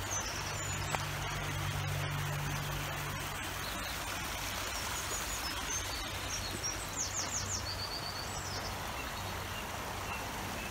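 River water running steadily below, with songbirds singing over it and a quick run of chirps about seven seconds in. A low steady hum sounds during the first three seconds.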